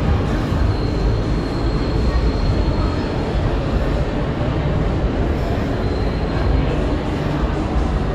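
Steady low rumble of busy city ambience, with a faint thin high whine that comes and goes twice.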